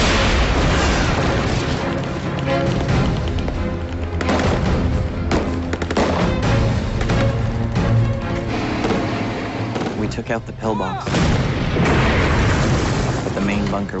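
Battle sound effects over a dramatic music score: booms of explosions and gunfire, with several sharp blasts standing out against a steady, dense din.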